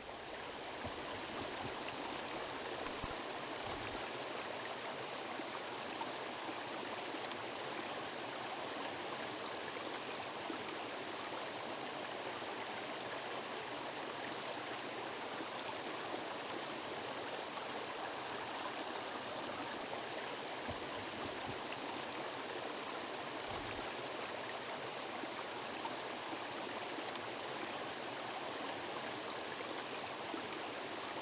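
Steady rushing of flowing water, like a stream, fading in over the first second and holding even throughout.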